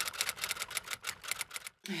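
Typewriter keystroke sound effect on a title card: a quick, even run of sharp clicks, about seven or eight a second, cutting off abruptly near the end.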